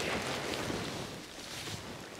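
Wind on the microphone outdoors: a soft, steady rush of noise with a low rumble, dying down a little.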